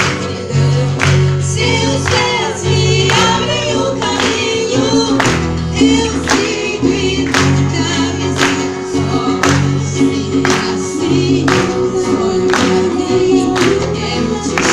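Live pop song performance: a singer's melody over bass and instrumental accompaniment, with a steady beat about twice a second.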